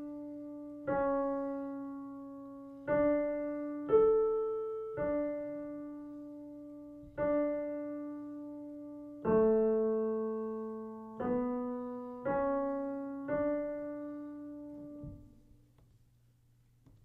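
A piano playing a slow single-line melody in D major, one note at a time in quarter, half and whole notes around D4: a melodic dictation exercise. The last note is a long D that rings out and dies away near the end.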